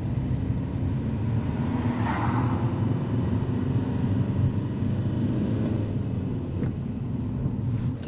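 Car engine and tyre noise from inside the cabin as a manual car pulls away and drives on, a steady low rumble. About two seconds in, a brief swell of higher hiss.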